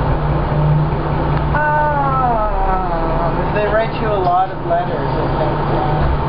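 Voices talking in short stretches over a steady low rumble, with a brief pause in the rumble between the stretches of talk.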